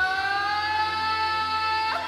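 Live rock band music: one long held high note, steady and slowly rising in pitch over a low bass drone, cut off sharply just before the end.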